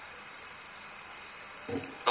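Faint, steady high-pitched background hiss in a pause between speech, with a brief soft sound near the end.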